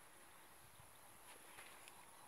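Near silence: faint background hiss with a couple of barely audible ticks.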